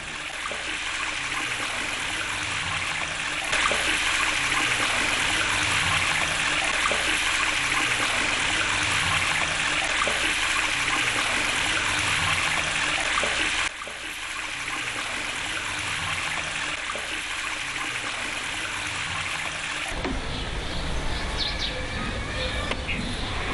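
Water from a traditional animal-drawn well pouring and splashing steadily out of its bucket into a stone irrigation channel. It gets louder about three and a half seconds in and drops suddenly near fourteen seconds.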